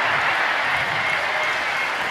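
Large theatre audience applauding steadily, a dense, even clatter of many hands.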